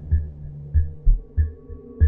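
Dark horror soundtrack built on a slow, low heartbeat-like pulse, a thump about every 0.6 seconds, over a steady hum, with a short high note recurring between the beats.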